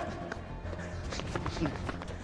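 Scuffling footsteps and short knocks on a concrete floor as men grapple, with a brief grunt near the end, over a low background music score.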